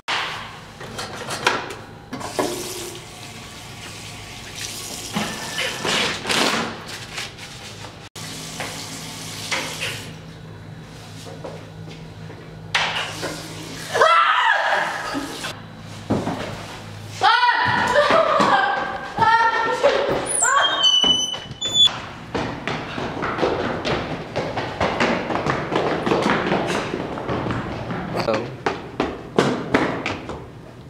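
A young woman's wordless frightened cries, strongest about halfway through, among scattered thumps.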